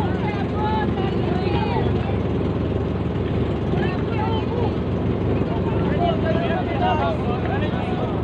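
An engine running steadily with an even low hum, with many people's voices talking and calling over it.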